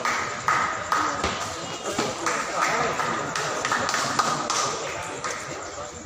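Table tennis rally: the ball clicking off the paddles and the table in quick alternation, roughly two hits a second, each with a short ringing ping, dying out about five seconds in as the point ends.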